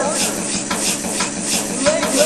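Short scraping and rubbing sounds, sampled and sequenced into a rhythmic beat, repeating about four times a second.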